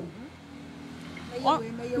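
A steady low hum of a motor vehicle's engine with a light hiss, heard in a pause in a woman's speech; her voice comes back about a second and a half in.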